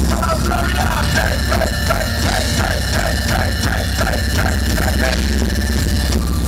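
Live rock band playing loud through the PA: a short figure repeating about two to three times a second over a steady low rumble. The figure stops about five seconds in.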